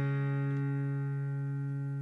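Background music: a strummed acoustic guitar chord ringing out and slowly fading.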